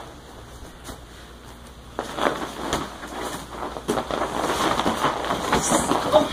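Grappling on padded mats: gi fabric rustling, with bodies scuffing and knocking against the mats. It is quiet at first, then about two seconds in a louder scramble starts, with many short knocks.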